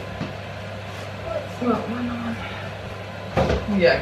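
Washed laundry being pulled out of a front-loading washing machine's drum, cloth rustling and shifting, over a steady low hum; a louder burst of handling noise comes near the end.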